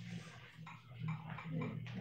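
Marker pen squeaking against a glass whiteboard in short writing strokes, over a low steady hum.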